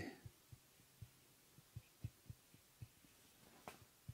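Near silence, with about eight faint, irregular light taps of a marker on a whiteboard as numbers are written.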